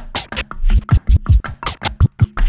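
Drum scratching on a Stanton STR8-150 turntable: kick and snare samples scratched back and forth on the vinyl and chopped with the crossfader into quick strokes, about six a second.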